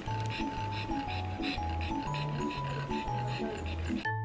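A pug panting fast, short breaths about four a second, under background music with a low bass line and a light mallet melody.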